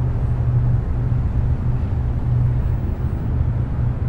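Steady low hum and rumble of background noise, even throughout, with no other distinct sound.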